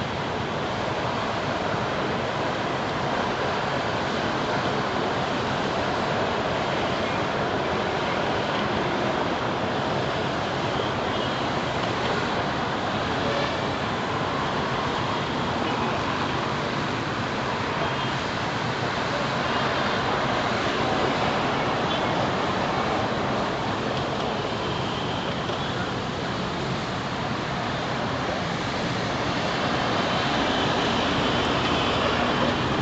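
Steady road traffic noise of cars and SUVs driving past on a wide road, an even rushing sound that holds at a constant level.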